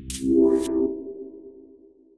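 Short electronic logo sting: a synth chord hits at once with a brief whoosh on top, then rings and fades out over about two seconds.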